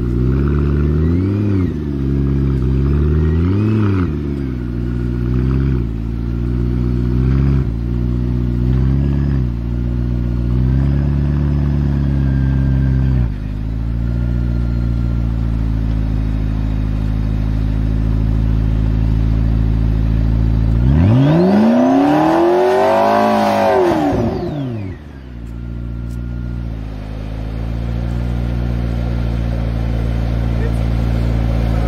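McLaren P1's twin-turbo V8 idling while stationary, blipped twice briefly early on. The idle drops a step about halfway through, then the engine is revved once, rising and falling over about four seconds, before settling back to idle.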